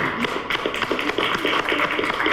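A group of people applauding: dense, steady clapping of many hands.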